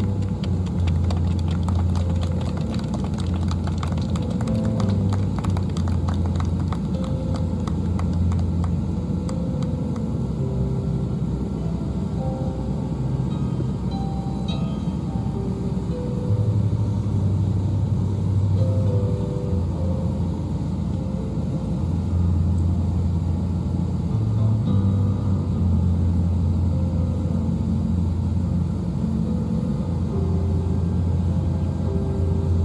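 Electric keyboard playing slow, soft organ-style chords over a held bass note, the chords changing every few seconds.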